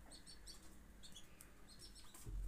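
Faint, short, high bird chirps, a few scattered notes over near-silent room tone.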